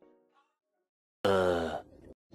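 Background music fades out, then after a second of quiet a voice says a loud, drawn-out "uhhh" that falls in pitch: a comic sound effect matching an "UHHH..." cartoon title card.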